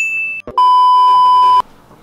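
Electronic beeps: a short, high steady beep, then a louder, lower steady beep lasting about a second that starts and stops abruptly.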